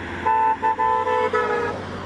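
Volkswagen T4 van's horn honking several times in quick succession as the van drives past, over the low hum of the van on the road.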